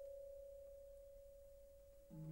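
One faint held orchestral note, a pure single pitch slowly dying away, between two phrases of the film score.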